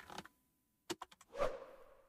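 Faint desk-side handling sounds: a few quick clicks about a second in, then a short creak as the seated person shifts.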